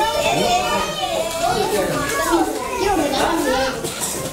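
Young children's voices overlapping as they play and call out, with no clear words.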